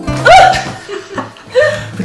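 A woman laughing: a loud, high-pitched laugh a quarter second in and a shorter one about a second later, over faint background music.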